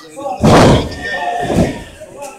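A wrestler's body hitting the wrestling ring's canvas: one loud, sudden boom from the ring about half a second in, ringing briefly, amid crowd voices.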